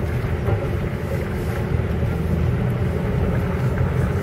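Inside the cabin of a VAZ-2120 Nadezhda driving slowly on a muddy dirt track: a steady, low drone of engine and tyre noise from Forward Professional 139 mud tyres.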